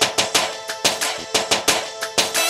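A live band plays dance music: drum strikes in a quick, uneven rhythm under a held note from a melody instrument.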